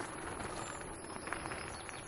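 Wheels rolling over a gravel trail, a steady gritty noise, with the light, quick footfalls of two harnessed dogs pulling at a run.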